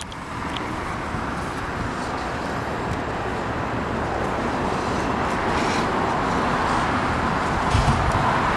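Steady, even roar of outdoor road traffic, slowly growing a little louder, with a short low thump near the end.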